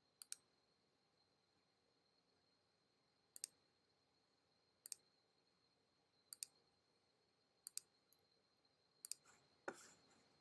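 Computer mouse button clicks, each a sharp press-and-release tick, coming every second or two at an uneven pace as nodes are placed one by one along a traced outline. There is a slightly fuller knock near the end, and otherwise near silence.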